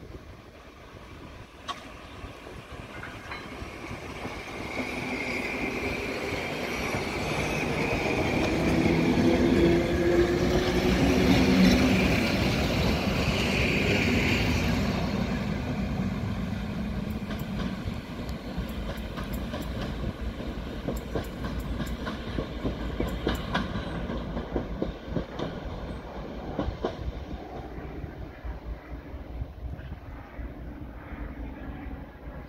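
EN57 electric multiple unit running by on the line. It swells to its loudest about ten to twelve seconds in, with a steady hum of tones over the rumble, then eases off as the wheels click rapidly over the rail joints.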